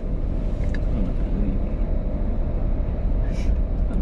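Steady low rumble of a car idling, heard from inside its cabin.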